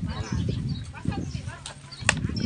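Background chatter of several people talking at once, with some low knocking and shuffling underneath.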